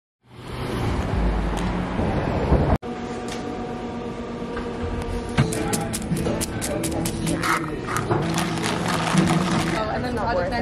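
Busy city street ambience at an outdoor café: indistinct voices, passing traffic and frequent light clicks and clatters. A low rumble at the start cuts off abruptly about three seconds in.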